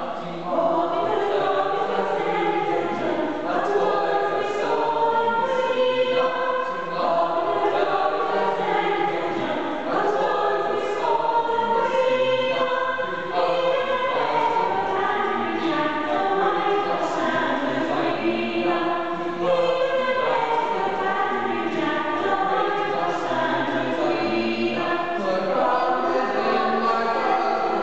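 Small mixed-voice a cappella ensemble of women and men singing a madrigal-style country dance song in close harmony, with no accompaniment.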